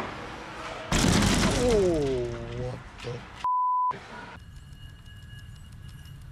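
A loud crash, followed by a person's drawn-out cry falling in pitch, then a half-second censor bleep over a cut-out word. After that comes a quieter steady background hum with a faint high whine.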